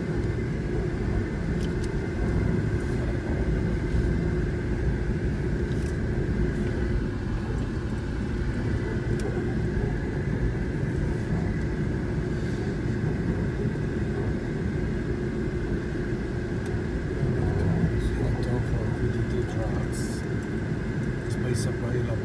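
Car interior noise while driving slowly: a steady low rumble of engine and tyres, with a steady higher hum over it.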